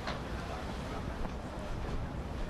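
Quiet outdoor ambience: a steady low rumble with a few faint clicks.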